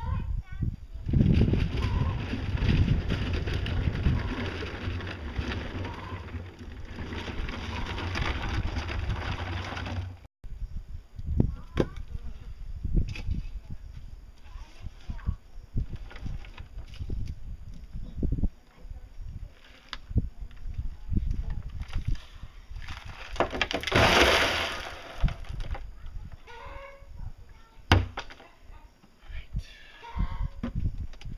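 Rushing noise for the first ten seconds, then a run of hollow knocks and clicks as an empty blue plastic barrel is rocked and tipped on a homemade PVC-pipe mixer frame.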